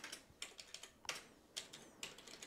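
Faint computer keyboard keystrokes: a handful of separate key presses spaced irregularly, as characters of code are deleted.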